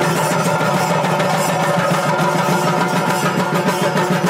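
Chenda drums of a Kerala temple ensemble beaten in a fast, dense, continuous roll.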